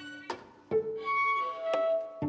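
Violins of a string ensemble playing a run of separate, sharply attacked bowed notes, about four in two seconds, the short opening notes giving way to longer held ones.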